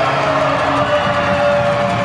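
Arena goal siren holding one steady tone over a cheering crowd, celebrating a goal just scored.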